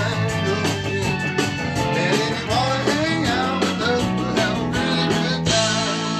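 A blues band playing live in the studio: electric guitars, bass and Hammond organ under a sung lead line. About five and a half seconds in, the rhythm stops and a held organ chord rings on.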